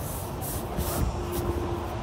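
A vinyl-upholstered pontoon seat lid being lowered and pressed shut over its storage compartment: several short swishing rubs in the first second and a half, over a steady low background rumble.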